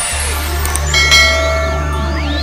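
Intro music with a steady low bass drone, and about a second in a click followed by a ringing bell chime, the sound effect of a subscribe-button and notification-bell animation.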